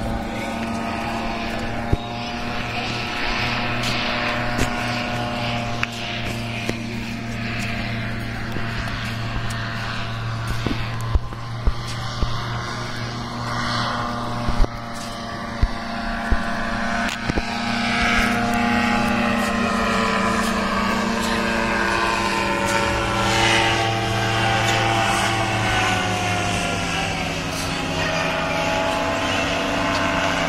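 Small propeller engine of a powered paraglider (paramotor) droning steadily in flight, its pitch shifting a little in the second half. A few sharp clicks are scattered through the middle.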